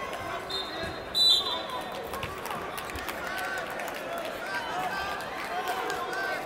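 A referee's whistle sounds once about a second in, a short shrill blast that starts the wrestling again, over the steady chatter of the crowd in the hall.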